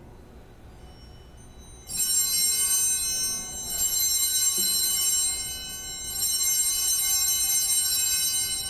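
Altar bells (sanctus bells) rung at the elevation of the chalice, signalling the consecration. Bright, jangling ringing starts suddenly about two seconds in and comes in repeated shakes, with a short lull shortly before the end.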